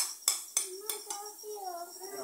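Metal spatula knocking and scraping against a frying pan while stirring scrambled egg and tomato, about three strikes a second, fading out after about a second.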